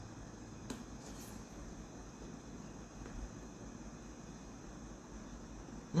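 Quiet room tone with a couple of faint clicks in the first second or so: a piece of dark chocolate dipped in peanut butter being bitten and chewed.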